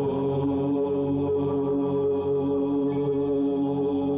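Background devotional music: voices chanting on long, steady held notes over a sustained drone.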